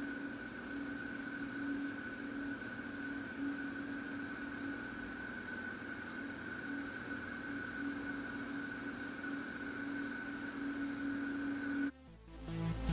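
A steady electrical hum with a fainter high whine above it over light room noise, cutting off suddenly at the end.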